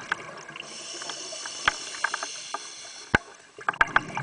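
Scuba diver breathing through a regulator underwater: a steady hiss of breath drawn through the regulator for a couple of seconds, with scattered sharp clicks, the loudest about three seconds in and several near the end.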